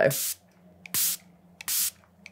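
Pump-spray bottle of Ciaté Everyday Vacay setting spray spritzing a fine mist onto a face: three short hisses under a second apart.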